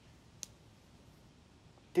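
Quiet room tone with a single short, sharp click about half a second in. A man starts speaking right at the end.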